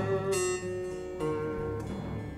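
Lap-played slide guitar in an instrumental passage: a plucked note about a third of a second in and another a little past a second in, each ringing on.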